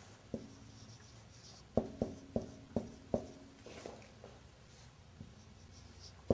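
Marker writing on a whiteboard: a single tap, then a quick run of about five tapping strokes a couple of seconds in, followed by a few softer strokes.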